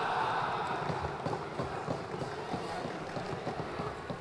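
Audience in a large hall reacting to a joke: a crowd noise of laughter and voices that slowly dies down.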